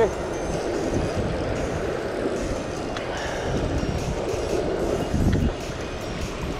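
Steady rumble of wind on the microphone mixed with the wash of waves on a rock ledge, with a brief low thump about five seconds in.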